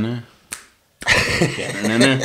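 Men's voices in a small room, with a single sharp snap about half a second in. After a short hush, a loud burst of voice, likely laughter, starts about a second in.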